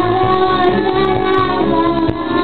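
Children singing karaoke into a microphone over loud backing music with a steady beat, the voices holding long notes.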